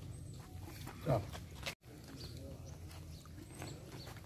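A single short animal call, loud over a steady outdoor background murmur, about a second in, sliding in pitch. The audio drops out completely for a moment just before two seconds in.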